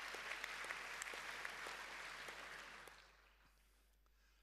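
Audience applause, a short round of many hands clapping that fades away about three seconds in.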